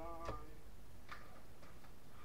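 A few light, sharp clicks of hard plastic action figures knocking together as they are handled, with a brief vocal sound at the very start.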